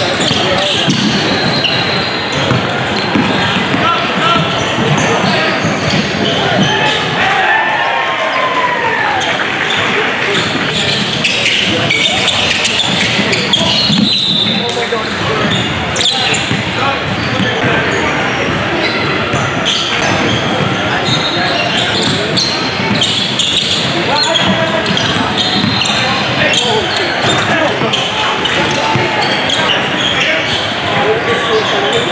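Live basketball game sound in an echoing gym: a basketball bouncing on the hardwood court amid a steady mix of players' and spectators' voices, with short squeaks now and then.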